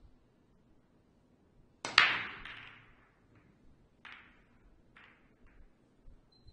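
A Chinese eight-ball break shot: the cue tip clicks the cue ball, which then cracks loudly into the racked object balls, and the pack clatters as it spreads for about a second. A few single ball clicks follow as balls strike each other or the cushions.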